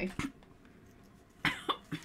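A person coughing and spluttering in two short, sharp bursts about a second and a half in, as if choking on a drink.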